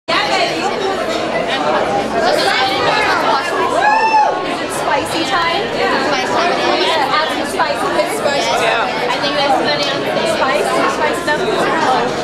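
Crowd chatter: many people talking at once in a large room, with one voice calling out loudly about four seconds in.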